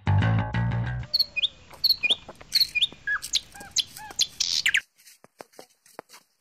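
Guitar music ends about a second in. A series of short bird chirps and calls follows, sharp notes that swoop up and down, and cuts off about a second before the end.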